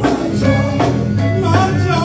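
Live gospel band: a woman and a man singing over electric bass, keyboard and drums, with a steady drum beat.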